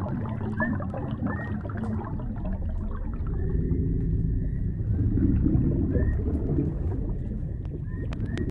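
Deep-sea ambience sound-effect track: a steady low underwater rumble with a noisy wash above it, and a few short high arching tones now and then.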